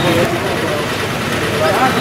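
Indistinct voices of several people talking over a steady low background hum.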